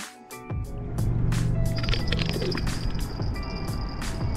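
Background music with a regular beat, with a low steady hum under it from about a second in.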